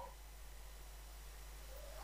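Faint steady background hiss with a low hum: room tone of a voice-over recording, with no distinct events.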